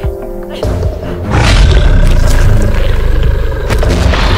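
A loud, rough roar for a Tyrannosaurus rex, starting about a second in and lasting a couple of seconds, over background music.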